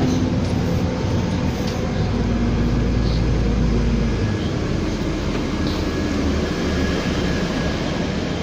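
Interior noise of a Nova LFS low-floor city bus on the move: engine and road rumble under a steady hiss. The deep low rumble eases off about four seconds in as the bus slows into the terminal.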